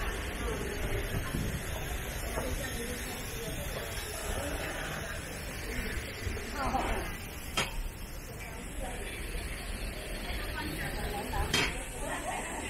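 Outdoor background of people talking at a distance over a steady low rumble. There are two sharp clicks, one past the middle and a louder one near the end.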